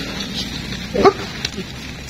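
A dog giving one short bark about a second in.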